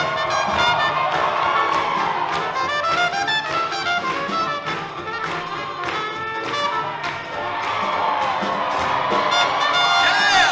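Live swing big band playing up-tempo jazz for Lindy Hop dancing, led by the trumpets and trombones of the brass section.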